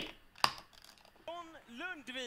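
A single sharp computer-mouse click about half a second in, starting the video playing. From just after a second in, a voice in three short phrases with rising-and-falling pitch.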